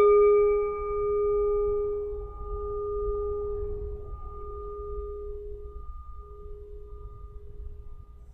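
A meditation bell rings out from a single strike, a low hum with a few higher overtones. The hum pulses gently as it slowly fades.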